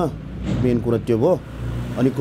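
A man speaking in short phrases, over a low rumble in the background.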